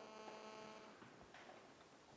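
Near silence: room tone with a faint, steady electrical hum that fades out about a second in.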